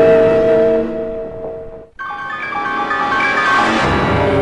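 Two startup/shutdown jingles in the style of Windows system sounds, one after the other. A held chord fades out by about halfway, then after a brief gap a new melodic jingle of quick stepping notes over a sustained chord begins.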